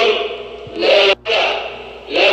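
Many men's voices chanting a short phrase together, echoing, in repeated rising-and-falling phrases. The sound breaks off for an instant just over a second in, then picks up again.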